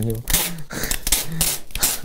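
Several short bursts of rustling, crinkling noise about a second apart, with brief murmurs of voice between them.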